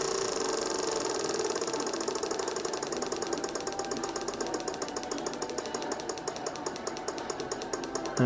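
A 12 V DC relay chattering as a square-wave oscillator switches it on and off. It starts as a fast buzz and slows into a rapid run of distinct clicks as the oscillator's frequency is turned down.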